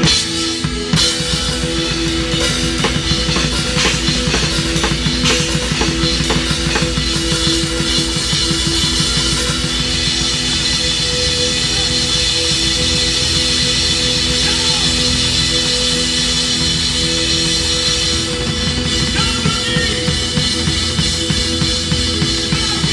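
A live rock band playing, with the drum kit to the fore: bass drum, snare and cymbals keep a fast, steady beat under sustained chords.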